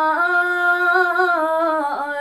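A woman singing a traditional Bhutanese song unaccompanied, holding one long, slightly wavering note that bends down in pitch near the end.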